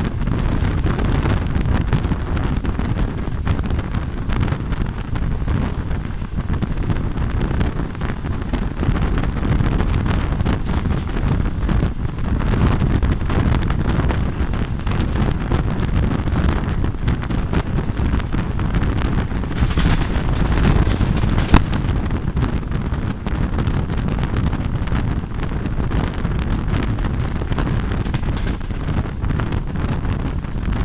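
Wind buffeting the microphone of a phone held out of a moving passenger train's window, over the steady running noise of the train on the track. A single sharp click stands out about two-thirds of the way in.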